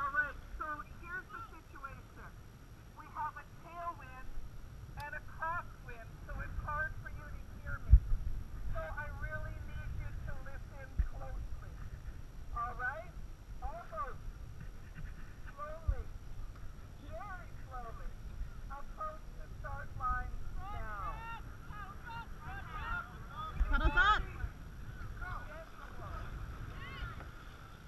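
Many people shouting short, sharp calls one after another during a dragon boat race, over a steady low rumble of wind and water. A few dull thumps come through, the loudest about eight seconds in.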